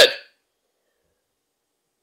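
The tail of a spoken word, cut off within the first moment, then dead silence.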